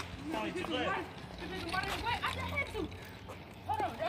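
Faint voices of several people talking and calling out at a distance, with a low steady hum underneath.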